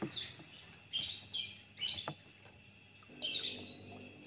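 Small birds chirping: several short, high chirps spread across the few seconds, over a faint steady high tone.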